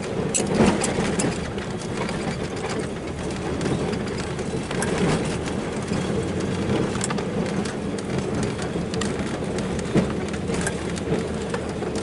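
Plow truck's engine running steadily, heard from inside the cab as it drives over a wet, slushy gravel driveway. Tyres on the slush give a steady hiss, with a few scattered light clicks.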